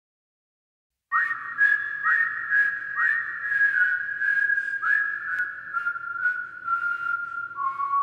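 Whistled melody opening a soul-pop song, starting about a second in: a run of notes that each slide upward, then held notes stepping down to a lower one. A faint, light, even beat and soft low accompaniment sit under it.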